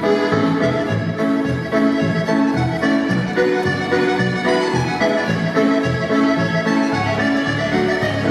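Accordion-led Scottish country dance music played in reel time, a bright melody over a steady bass-and-chord beat.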